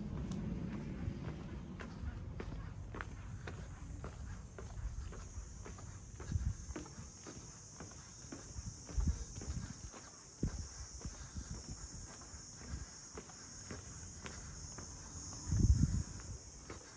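Footsteps of a person walking on an asphalt lane, an irregular run of soft low thumps, with a louder cluster of thumps shortly before the end.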